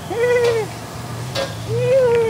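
A voice giving two long hooting calls, each rising and then falling in pitch, one near the start and one near the end. Under them runs the steady hum of a wok burner, with a single metal clank of a spatula in the wok between the calls.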